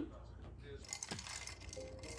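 Faint clinking of glass and ice: a few light, sharp clinks starting about a second in.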